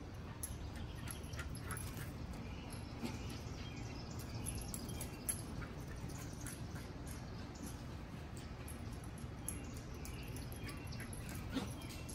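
Beagles at play giving a few faint short yips over a steady low rumble of outdoor background noise, with scattered light clicks.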